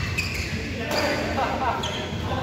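Badminton play: sharp racket strikes on a shuttlecock and shoes squeaking on the court, with players' voices about a second in.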